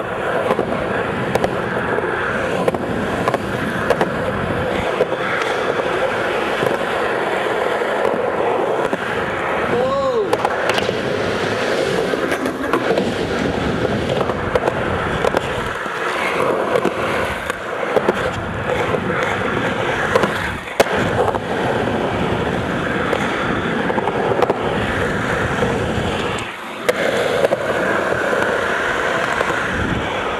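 Skateboard wheels rolling continuously over smooth concrete park transitions, a steady grinding roll with a few sharp clacks and a brief lull near the end.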